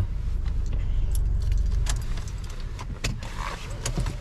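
Low, steady rumble of a car moving slowly, heard from inside the cabin, with four light jingling clicks spread through it.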